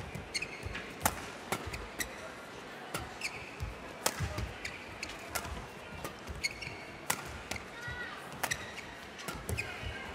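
Badminton rally: a string of sharp racket hits on the shuttlecock, roughly one a second, with brief squeaks of shoes on the court over a low hum of the arena crowd.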